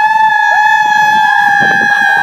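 A child's loud, high-pitched scream held on one steady note, with other children's shouts and yelps underneath.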